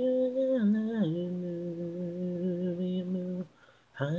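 An isolated a cappella vocal with no instruments: a single voice holds a long note, slides down to a lower note about a second in, holds that, and breaks off shortly before the end.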